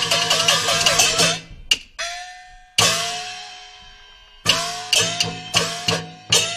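Peking opera percussion ensemble (luogu) of gongs and cymbals accompanying a stage fight. A fast, even run of ringing strikes stops about a second in and is followed by a sharp clap. Then come single gong strokes, each left to ring out, spaced apart at first and quickening near the end.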